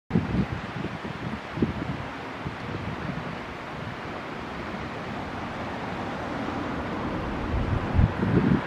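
Wind buffeting the microphone in gusts, strongest in the first couple of seconds, over a steady rushing noise that slowly grows louder toward the end.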